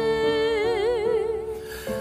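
Worship song: a singer holds a long note with vibrato over soft, steady accompaniment, fading out in the last half second.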